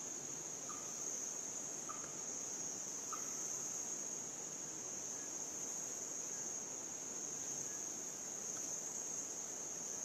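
Steady high-pitched drone of rainforest insects, with a few faint short chirps about once a second in the first few seconds.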